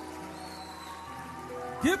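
Church keyboard or organ holding a steady sustained chord under a pause in the preaching, with light clapping from the congregation.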